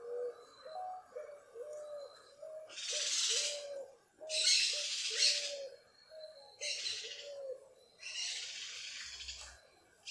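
A bird cooing in a run of short, low notes, about two a second. Over it come four louder breaths, the longest about a second and a half, as a slow yogic breathing exercise is carried on.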